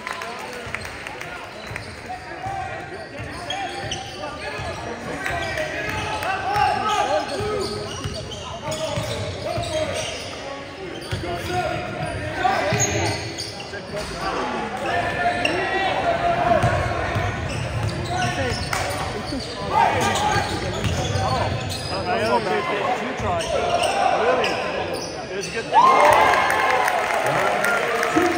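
Basketball game ambience in a gym: a basketball bouncing on the hardwood court, mixed with shouting voices of players and spectators, echoing in the large hall.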